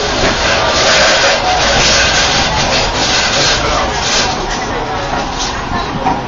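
Capri funicular car running along its track: a loud, steady rushing noise of the moving car, swelling slightly in the middle.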